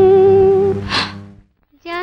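Old Hindi film song ending on a long held vocal note, with a short noisy accent about a second in, then fading to a brief silence. Just before the end a new song starts with a woman singing.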